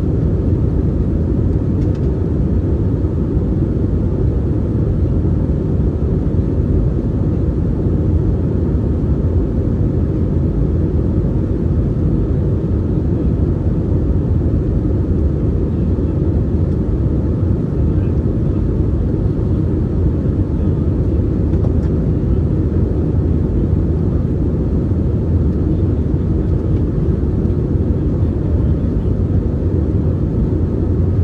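Steady cabin noise of an Airbus A319-132 in the climb: the low drone of its IAE V2500 engines and the airflow, heard from a window seat by the wing.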